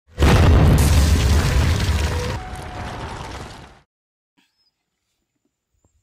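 Cinematic explosion sound effect for a wall bursting apart: a sudden loud blast with a deep rumble of crumbling rubble, dying away over about three and a half seconds.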